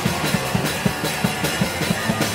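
Hardcore punk band playing live: a drum kit beats a fast, steady rhythm under loud electric guitar and bass.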